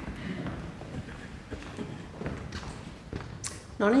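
Footsteps on a hard floor and shuffling as people walk and take their places, with faint murmured voices and a few light knocks, one sharp click shortly before the end. A woman starts speaking into the microphone at the very end.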